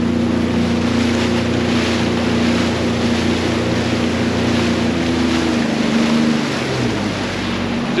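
Sea-Doo personal watercraft engine running at cruising speed over the rush of water; from about six seconds in, the engine note drops as it slows.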